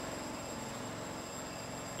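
Steady low background noise with a faint, thin high whine and no distinct event.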